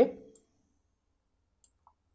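The end of a spoken word fading out, then near silence with two faint, short clicks close together near the end, from a computer mouse.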